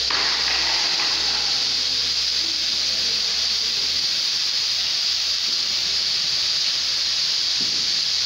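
Several CO2 fire extinguishers discharging at once, their gas pouring out in a steady, loud, high hiss that does not let up.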